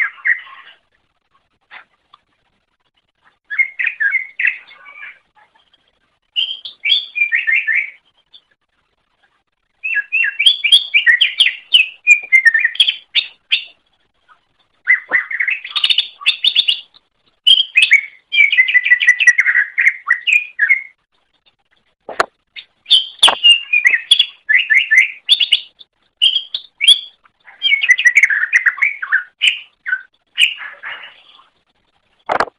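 Cucak ijo (green leafbird) singing in repeated bursts of rapid, varied chirping and warbling phrases, each a second to a few seconds long, with short silent pauses between them. Two sharp clicks come about three-quarters of the way through.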